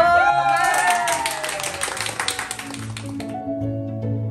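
A man's voice trails off as a small group claps for about three seconds, the clapping cutting off suddenly; soft background music with plucked notes carries on underneath and takes over.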